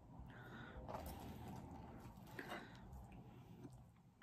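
Faint chewing of a mouthful of food with the mouth closed, with a few small soft mouth sounds.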